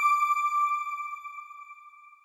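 A single high, bell-like chime of an outro logo sting, ringing and fading away over about two seconds.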